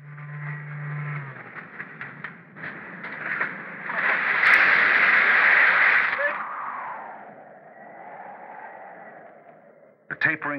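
A loud rushing noise swells about four seconds in, holds for about two seconds, then fades away, sinking in pitch. Before it, faint muffled voices, as if over a radio, sound over a low steady hum.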